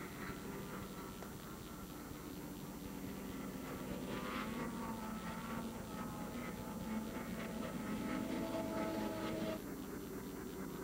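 Snowmobile engines running in the distance, their drone gliding up and down in pitch as the machines ride across the ice. The sound grows louder through the middle and drops suddenly shortly before the end.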